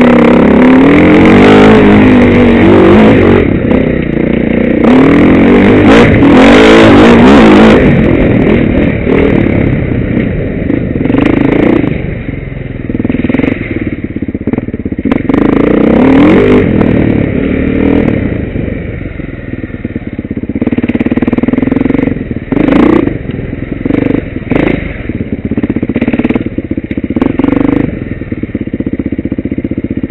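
Enduro motorcycle engine revving up and down while riding a rough off-road trail, with the bike clattering over the bumps. It is loudest over the first several seconds of hard acceleration, then runs on at varying revs.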